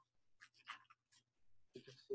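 Near silence: a pause on a video call, broken only by a few faint, brief ticks.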